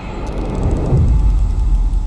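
A steady low rumble from a film trailer's soundtrack, coming in right after a held musical tone cuts off sharply.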